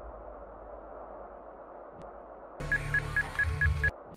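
Intro music and sound design: a low rumble fades away, then about two and a half seconds in a new electronic passage starts with a steady low hum and a rapid run of short high beeps, about five a second. It cuts off abruptly near the end.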